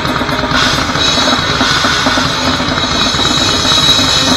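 Grindcore band playing live at full volume: fast drumming on a full kit with pounding bass drum and crashing cymbals, over distorted guitar. The drums dominate the mix from close behind the kit.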